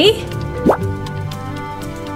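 Background music of steady held notes, with a single quick rising 'bloop' sound effect a little under a second in.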